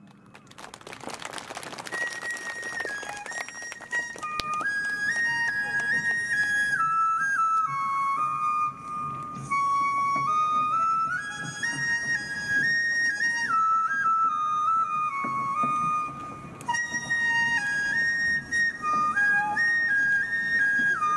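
Shinobue, a Japanese bamboo transverse flute, playing a solo melody of held notes that step up and down, entering about two seconds in after the drums have stopped.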